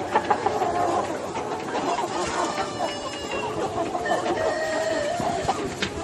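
A large flock of free-range chickens clucking continuously, many birds calling over one another, with a few longer drawn-out calls among the clucks.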